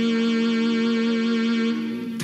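Film background score: a sustained chord of several tones held steadily, breaking off just before the end.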